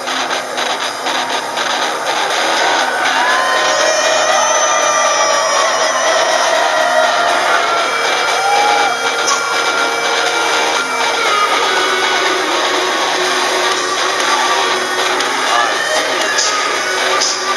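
Loud heavy-metal rock music, a dense mix of distorted guitars, with an electric bass played along to it. A few seconds in, several high notes bend and glide in pitch.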